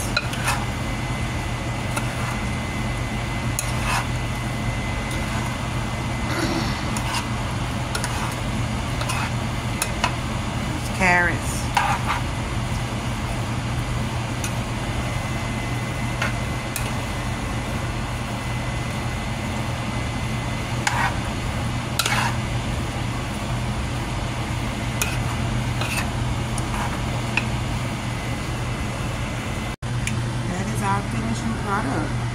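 A utensil clinking and scraping now and then against a metal roasting pan while vegetables and ravioli in sauce are stirred, over a steady low hum.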